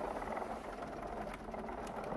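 Foot wheels of a 3D-printed R2-D2 rolling across carpet as the unpowered droid is pushed by hand, a steady rolling noise with a few light clicks.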